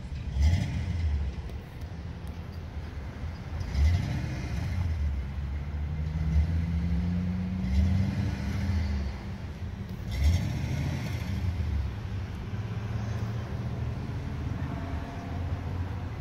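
Car engine rumbling at a distance, with several short surges a few seconds apart and a slowly rising engine tone midway.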